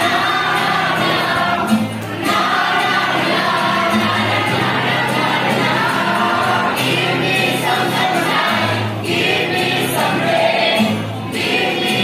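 A small group of women singing a song together in unison, accompanied by a strummed acoustic guitar.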